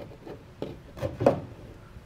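Hands handling stripped wire and a plastic butt connector, giving a few short clicks and rubs, the sharpest a little over a second in.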